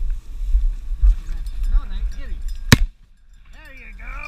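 A single shot from a black powder shotgun, sharp and loud, about two and a half seconds in. Wind rumbles on the microphone before it.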